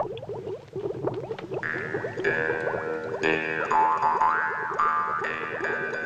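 Comic film soundtrack: a quick run of short rising slide-whistle-like glides, several a second, joined about one and a half seconds in by music with held chords and high swooping notes.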